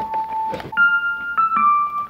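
Hypersonic 2 virtual instrument's Vintage Electric Piano patch playing back a MIDI piano part: a few held notes, the pitch changing three or four times.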